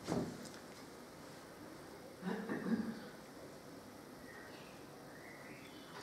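Quiet room tone in a hall, with a brief low murmur of a voice a little over two seconds in.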